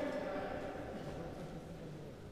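Faint, indistinct voices of people talking among themselves, fading quieter over the two seconds.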